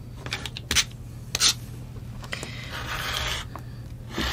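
Rotary cutter blade rolling through a pieced cotton quilt block against an acrylic ruler on a cutting mat: a rasping cut lasting about a second, starting a little past halfway. Before it come a few sharp clicks and taps as the ruler and cutter are handled and set down.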